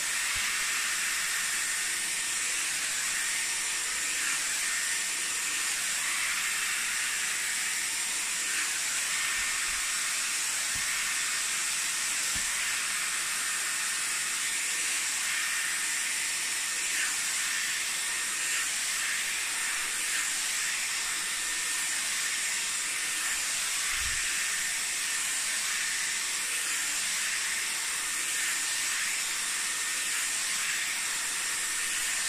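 Dyson Airwrap with its soft smoothing brush attachment running on full heat and full speed: a steady rush of blown air with a faint high whine, brushed through hair, with a few soft knocks from handling.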